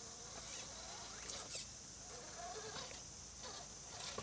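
Gen 8 RC rock crawler's electric motor and gear train whining faintly in short throttle bursts as it crawls over rocks. Each burst rises and falls in pitch, several in a row, over a steady high hiss.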